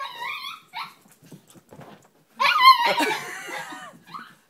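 Chihuahua–miniature pinscher mix whining in high, wavering cries: a short run right at the start, then a louder burst about two and a half seconds in. The dog is excited at hearing the school bus arrive.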